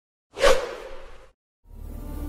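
A single whoosh sound effect, sudden and loud at first, then fading out within about a second. After a brief silence, background music fades in near the end.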